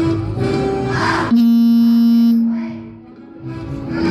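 Children's choir singing with accompaniment, broken by a very loud sustained note, held steady for about a second, that fades away; after a brief lull the music picks up again.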